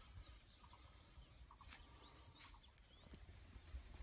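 Near silence: faint outdoor background with a few faint, short high chirps.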